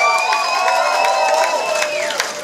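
Concert crowd cheering and whooping, many voices rising and falling over one another, with a long high whistle held through most of it.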